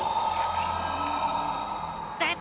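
Eerie cartoon sound effect: a steady high tone over a hiss, slowly fading. It is the strange noise in the house that a character says does not sound like wind.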